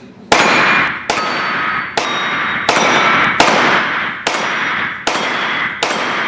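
Kalashnikov rifle fired in slow aimed shots, about eight in all, each crack followed by a long echo in the enclosed range and a thin metallic ring from the steel plate targets.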